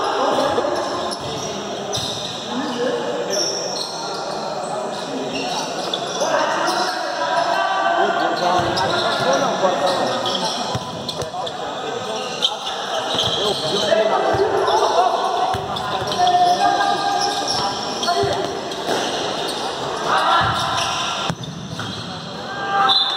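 Futsal ball being kicked and bouncing on a hard indoor court, with players shouting to each other. It all echoes in a large gym hall.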